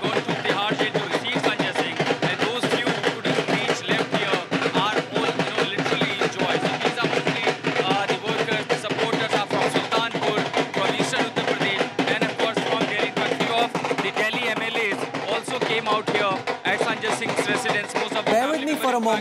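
Dhol drums played in a fast, continuous beat, really loud, with voices of a crowd shouting over them.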